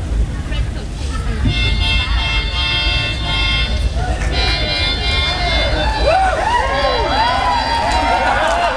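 A small handheld wind instrument played into a microphone over a PA: first a held chord of several notes, then, about halfway through, quick notes that swoop up and down in pitch.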